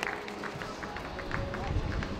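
Outdoor football-ground ambience: distant voices, faint music and scattered light knocks, with no single sound standing out.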